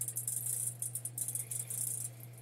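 A dense, irregular run of small, dry, high-pitched clicks and rattling, over a steady low electrical hum.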